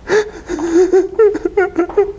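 A young man sobbing and whimpering in short, breathy, high-pitched bursts that break up faster near the end.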